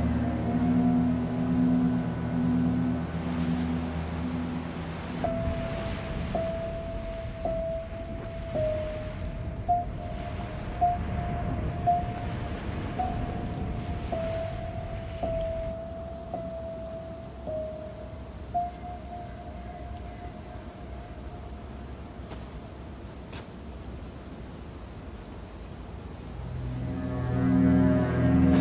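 Eerie horror-film score. A low pulsing drone opens it, and after about five seconds a single wavering note takes over. A thin, steady high whine joins about halfway through and holds until near the end.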